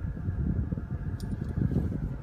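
Car cabin noise while driving slowly: a low, steady engine and road rumble heard from inside the car.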